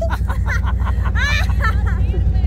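People laughing just after a cyclist's crash, with bursts of laughter about half a second in, over a steady low rumble.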